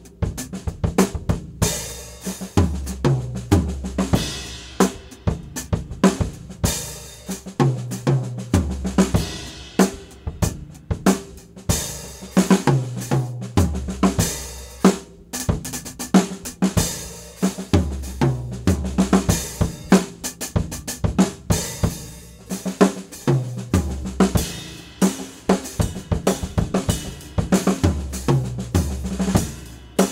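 Acoustic drum kit played steadily: a groove on hi-hat, snare and bass drum alternating with fills that run across the toms and snare and land on a crash cymbal, a fill coming round about every five seconds. The fills are accent patterns from a snare reading study spread around the kit, with the unaccented strokes played softer between them.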